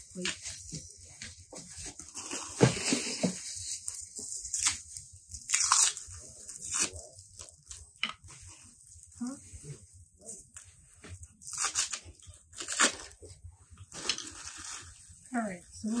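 Packaging rustling and crinkling in irregular bursts as flat-pack nightstand parts are unwrapped by hand.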